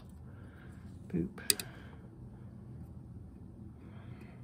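Hobby nippers snipping through a plastic gate on a Gundam model kit runner: one sharp click about a second and a half in.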